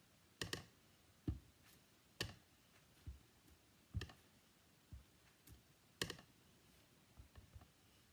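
Clear acrylic stamping block tapped on an ink pad and pressed onto cardstock: a series of faint, sharp taps about once a second, a few coming in quick succession near the end.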